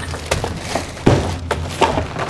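Plastic shopping bags rustling and crinkling as they are emptied, with boxed items and packages knocking together and dropping. There are several sharp crackles, the loudest a little over a second in.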